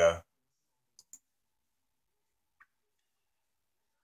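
Two quick faint clicks about a second in and a third faint click past halfway, typical of a computer mouse being clicked; otherwise dead silence.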